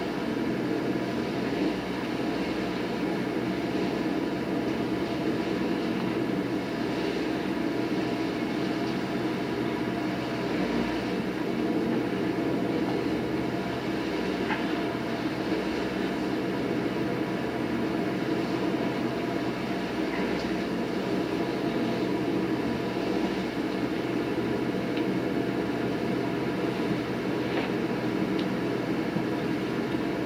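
Truck-mounted Tarrant leaf vacuum unit running steadily, a continuous engine-and-fan drone as it sucks up and shreds leaves.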